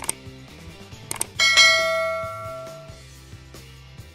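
Subscribe-button animation sound effect: a couple of sharp mouse-style clicks, then a bright bell ding about a second and a half in that rings out and fades over about a second and a half. Soft background music runs underneath.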